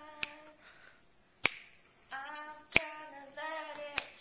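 A woman singing a cappella in held notes, snapping her fingers in time about once every second and a quarter; the snaps are the loudest sounds.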